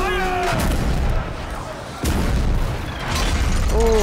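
Film soundtrack of cannon fire: deep booms and a heavy low rumble, with a sharp new blast about two seconds in. A brief voice is heard at the start and again near the end.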